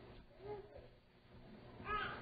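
Near silence with one faint, brief pitched sound about half a second in, and a man's voice starting faintly near the end.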